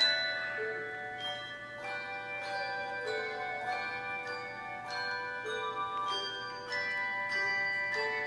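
Handbell choir playing a piece of music with brass handbells, rung in chords and single notes. A new stroke comes every half second to a second, and each one rings on into the next.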